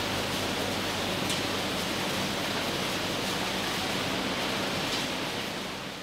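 Steady machinery noise of a plastic-packaging sorting plant: conveyor belts and sorting machines running, with a low hum under an even rushing noise. It eases off slightly near the end.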